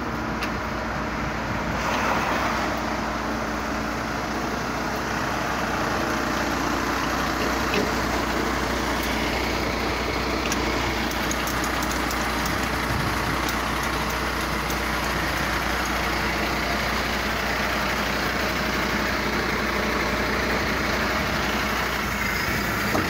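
A recovery truck's diesel engine idling steadily close by.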